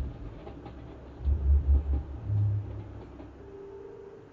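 A deep, low rumble from a film soundtrack comes in heavy swells about a second in, then fades. A short, steady low note sounds near the end.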